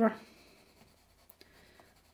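Castle Art coloured pencil shading on the paper of a colouring book: faint, scratchy strokes of the pencil lead laying down a layer of colour.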